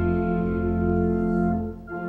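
Organ accompaniment holding a steady chord between verses of a hymn. It breaks off briefly near the end before the next verse starts.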